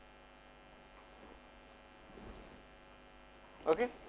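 Steady, low-level electrical mains hum with a buzz of many evenly spaced overtones, running unchanged in the lecture's sound system. A man says one short word near the end.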